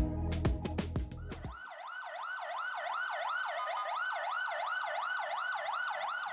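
Electronic background music with a beat ends about a second and a half in. An emergency vehicle siren then sounds in a fast yelp, rising and falling about three times a second.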